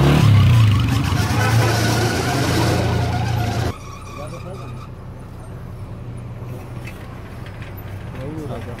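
A motorcycle engine running close by over a slow-moving pickup truck's engine, with a brief rise and fall in pitch near the start. About four seconds in, the sound cuts suddenly to a quieter, steady engine hum of the pickup driving slowly.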